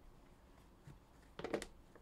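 A card box being picked up and handled: a short cluster of quick clicks and scrapes about one and a half seconds in, otherwise faint room tone.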